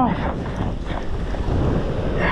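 Wind buffeting the camera microphone, with small surf washing up the sand.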